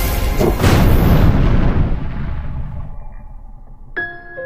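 A loud boom sound effect about half a second in, dying away over roughly two seconds as the beat music before it stops.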